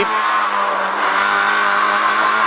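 Fiat Seicento Kit Car's four-cylinder engine running hard at high, steady revs in third gear, heard from inside the cabin.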